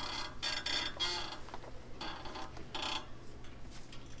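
Paper rustling as pages are handled and turned, in about five short rustles.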